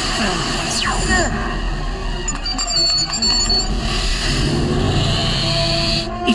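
Cartoon sound effects of a crackling energy-field trap over a music score: a steep falling zap about a second in, then short high electronic tones in the middle.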